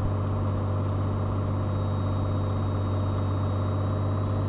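Cessna 182 Skylane's piston engine and propeller droning steadily inside the cabin, with a strong low hum.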